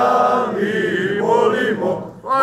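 Men singing a traditional kraljci Epiphany carol, the voices holding long, slowly bending notes.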